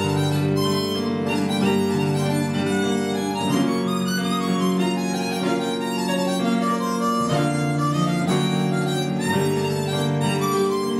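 Harmonica playing a melody with held notes over grand piano accompaniment, a jazz duo performing live.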